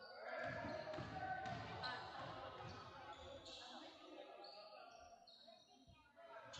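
A basketball bouncing a few times on a hardwood gym floor as a player dribbles at the free-throw line, with faint voices of players and spectators.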